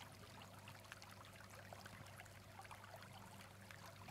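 Near silence: a faint, steady stream-like rush with fine trickling crackle and a low hum underneath.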